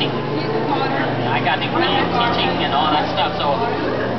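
Indistinct talk from people nearby over a steady low hum, which steps up in pitch about halfway through.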